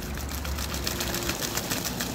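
Muscovy duck bathing in a shallow puddle, splashing water with its wings and body in a rapid patter of splashes that grows thicker in the second half.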